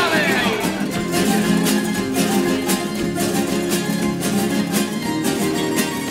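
A plucked-string band of bandurrias, lutes and Spanish guitars playing a lively tango with rapid, even picking over held chords.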